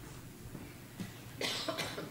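A person coughing: a short double cough about one and a half seconds in, over the low hush of a large room.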